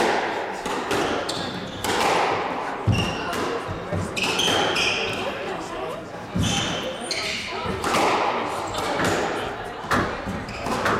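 Squash rally: the ball striking racquets and the court walls in a run of sharp hits, with shoes squeaking on the wooden floor. Two heavier thuds come about three and six and a half seconds in.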